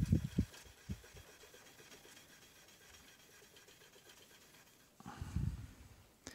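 0000 steel wool rubbing faintly over a guitar neck's nickel frets to smooth burrs, mostly very quiet, with a few soft handling knocks in the first second and a short low rumble of handling noise about five seconds in.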